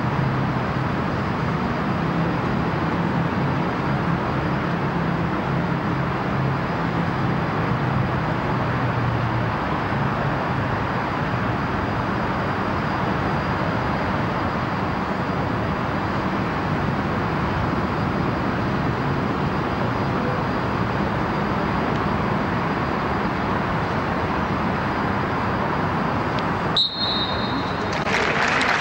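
Steady hiss and rumble of an empty football stadium's ambient noise, with no voices, during a minute of silence. Near the end comes a short, high referee's whistle blast that closes the minute of silence.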